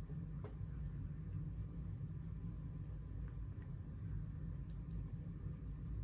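Steady low background hum with a few faint soft ticks.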